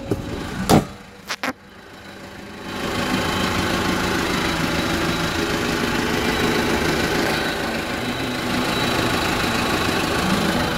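Kia Bongo III truck's engine running steadily at idle, coming up from about three seconds in. In the first second and a half there is a sharp knock and then two quick clicks.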